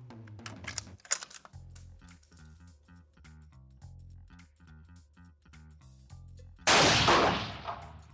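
A single shot from a scoped bolt-action rifle about two-thirds of the way in: sudden and loud, with a reverberant tail of about a second in an indoor range. Background music with a steady beat plays throughout, with a brief sharp tick about a second in.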